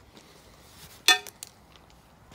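Small blue metal impact grenade, loaded with a Thundersnap cap, striking the stony ground about a second in: one sharp, ringing metallic clink, then two faint clicks as it bounces and settles.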